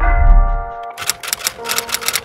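A typewriter key-clicking sound effect begins about a second in, a rapid run of clicks over sustained background music. Just before it, a deep bass hit swells and fades in the first second.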